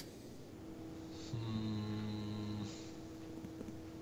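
A man humming a low, held 'mmm' for about a second and a half, faint, over a faint steady background tone.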